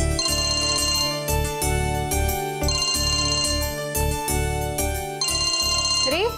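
Mobile phone ringing with a melodic ringtone: a short synthesized tune with a pulsing bass, looping over and over.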